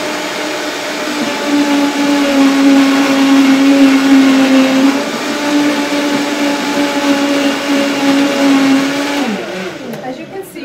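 High-powered countertop blender running loud, blending a thick green smoothie of leafy greens, fruit and milk. Its motor steps up in speed about a second and a half in and holds a steady whine. Near the end it is switched off and winds down with a falling pitch.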